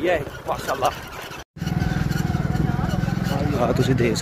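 A few words of speech, a brief dropout to silence, then a steady low engine drone with a fast even pulse, and a voice over it again near the end.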